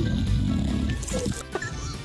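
A bulldog's low, rough vocal sound lasting about a second, over background music.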